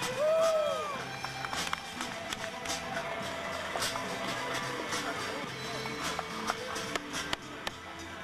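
Rock music soundtrack with a steady drum beat and a voice, likely sung.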